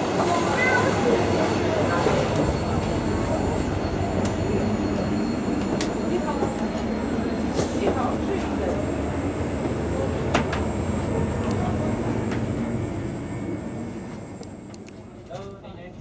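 Steady interior noise of a TGV Euroduplex double-deck train standing at the platform, with indistinct passengers' voices, a faint high whine and a few sharp clicks. The noise fades down over the last few seconds.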